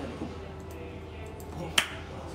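A single sharp click near the end, over faint background music and a low steady hum.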